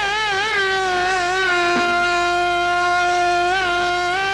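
A man's singing voice holding one long high note in Uzbek traditional style: ornamental wavers at first, then held steady for about two seconds, with a short turn near the end.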